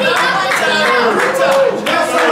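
A crowd clapping in a steady beat, about two to three claps a second, with a man's voice carrying over it.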